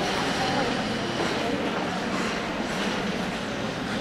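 Steady, rumbling background noise of an indoor ice-rink hall, with faint murmuring voices of spectators.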